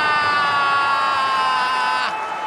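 A TV commentator's goal call: one long shout holding the last vowel of the scorer's name, sliding slowly down in pitch and breaking off right at the end, over a stadium crowd's cheering.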